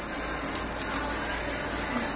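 Steady background hiss of room noise with one light tap about half a second in, between bursts of baby babbling.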